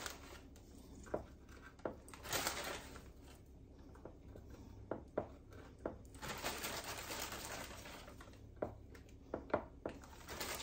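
Plastic bag of vanilla wafers crinkling as cookies are taken out of it, in spells of rustling, with a few short light clicks in between.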